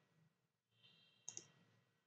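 Near silence, broken about a second and a half in by two quick faint clicks of a computer mouse button selecting an option in the CAD software.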